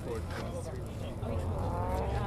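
A car engine running nearby, revving up with a rising pitch in the second half, over a steady low rumble and crowd chatter.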